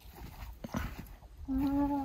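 Footsteps in snow, several soft steps. About one and a half seconds in, a steady held hum at one unchanging pitch starts and runs on past the end.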